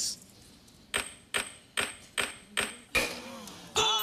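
Game-show answer-reveal sound effect: five sharp, high ticks about two and a half a second, then a louder hit as the answer comes up. Excited shouting starts just before the end.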